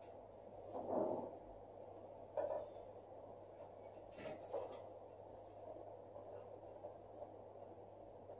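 Quiet room with a steady low hum, and a few faint short sounds of a marker writing on a whiteboard, the clearest about four seconds in.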